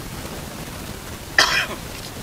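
A man coughs once, sharply, about a second and a half in, over a steady background hiss.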